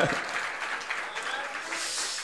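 Audience applauding: a soft, even patter of clapping that swells slightly near the end.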